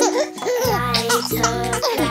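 Cartoon child's voice giggling over children's music; a low bass line comes in just over half a second in.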